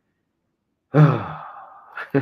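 A man's voiced sigh starting about a second in, fading into a long breathy exhale.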